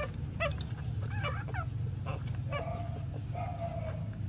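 Newborn puppies squeaking and whimpering while jostling to nurse at their mother: a run of short, high calls, some sliding up and down in pitch, over a steady low hum.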